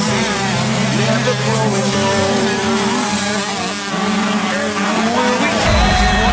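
Several 125cc two-stroke motocross bikes racing, their engines revving up and down in pitch as they accelerate. Near the end a deep low sound comes in.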